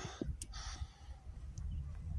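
Quiet outdoor background: low wind rumble on the microphone, a soft breath about half a second in, and a faint click just before it.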